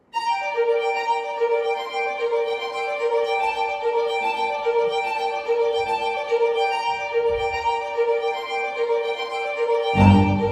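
Music begins suddenly: a bowed string instrument holds a single note on one steady pitch with bright overtones, slightly pulsing, throughout. Right at the end a deeper, louder layer comes in underneath.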